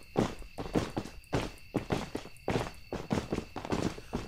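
Footsteps sound effect: a tramp of many steps, about three a second, the summoned minion army marching in.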